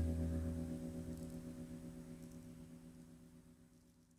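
The last sustained chord of a live band's song rings out and fades steadily away to near silence.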